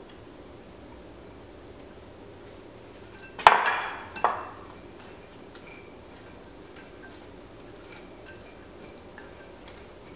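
Glass bowl clinking sharply as it is set down, ringing briefly, with a second clink just under a second later, about three and a half seconds in. After that, faint light taps of a silicone spatula against the glass mixing bowl as salad is stirred.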